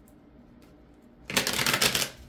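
A deck of tarot cards being shuffled by hand: after a quiet first second, a loud, dense crackle of cards rubbing and flicking together starts about a second and a quarter in.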